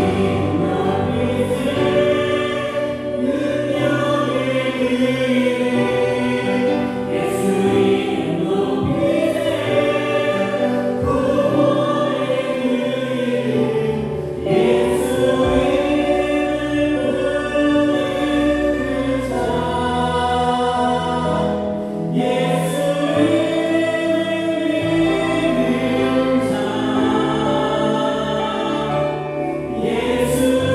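Church praise band performing a gospel hymn: a group of singers in unison over electric guitar, bass guitar, keyboards and drums, the melody moving in long held notes.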